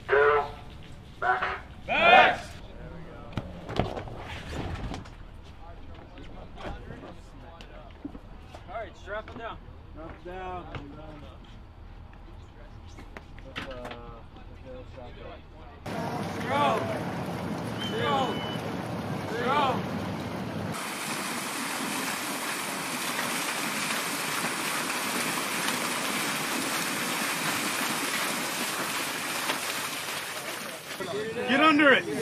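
Men's voices shouting in short bursts with pauses, at a distance and too far off to make out. Later a steady, even rushing noise takes over.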